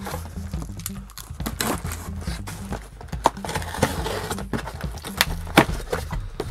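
Cardboard parcel being handled and its flaps pulled open: rustling and scraping of the box with several sharp knocks, the loudest near the end. Low background music runs underneath.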